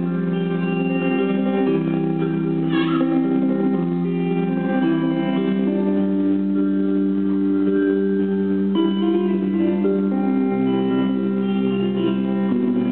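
A live rock band playing an instrumental passage on electric guitar and bass guitar, with held notes and chords that change every second or two.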